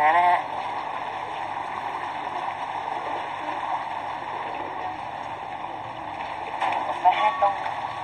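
Steady outdoor rushing background noise by a river, with a short high-pitched voice right at the start and again about seven seconds in.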